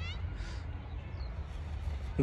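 Steady low wind rumble on the microphone in an open field. At the very start a voice's shout slides upward and trails off.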